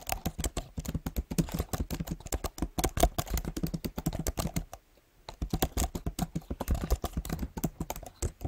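Typing on a computer keyboard: a quick, uneven run of keystrokes with a brief pause about halfway through.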